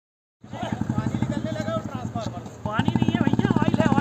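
Bystanders talking over a steady, rapidly pulsing engine-like running sound, starting suddenly about half a second in.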